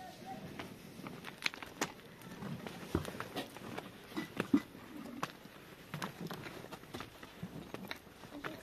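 Irregular clicks and crunches of footsteps on dry, stony ground, with brief faint voices between them.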